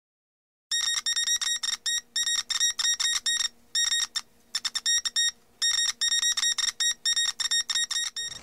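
High-pitched electronic beeps in quick, uneven Morse-like bursts, a TV news-bulletin intro sound effect. They start just under a second in and pause briefly twice midway.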